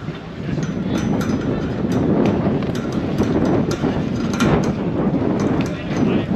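Wind buffeting an outdoor camera microphone: a steady low rumble, with scattered light clicks through it.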